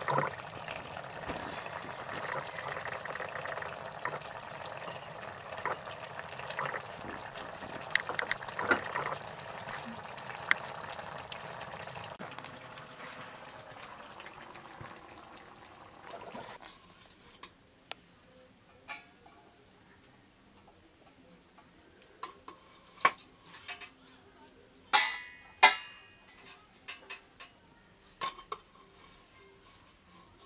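Curry bubbling in a metal wok over a wood fire, with occasional clicks of a spoon, for the first half. After that it is quieter, with scattered clinks and clanks of metal pots, plates and a serving spoon.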